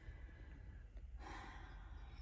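A soft breathy exhale, like a sigh, starting a little over a second in, over a faint low rumble.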